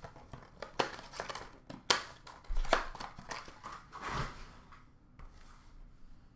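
Hockey card packaging being handled and torn open: several sharp snaps, then a longer crinkling rustle of wrapper about four seconds in.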